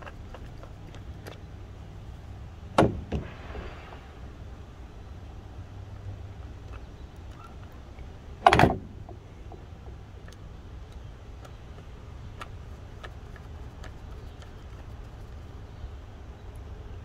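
Small T8 Torx screws being turned into the plastic speedometer-motor mount of a gauge cluster with a precision screwdriver: faint scattered ticks, with two sharper clicks about three and eight and a half seconds in. Under it a steady low rumble of wind on the microphone.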